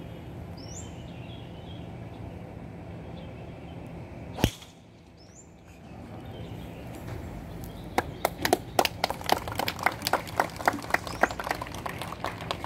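Golf driver striking a ball off the tee: one sharp crack about four seconds in. A few seconds later scattered clapping from spectators starts and runs on.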